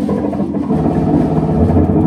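Live jazz quartet playing a loud, dense passage: electric guitars and synth holding thick low sustained tones over double bass and drums.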